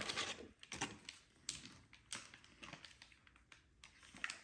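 Packaging rustling and crinkling as a wrapped chew stick is pulled out of a cardboard box: irregular light clicks and crackles, loudest in the first half second, then scattered.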